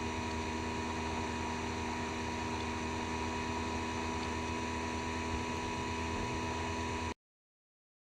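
Steady electrical hum and hiss with several constant tones, unchanging throughout, cutting off abruptly to dead silence about seven seconds in.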